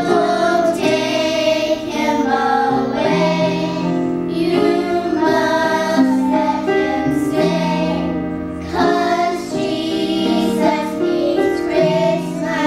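Children's choir singing a song together, holding notes of about a second each.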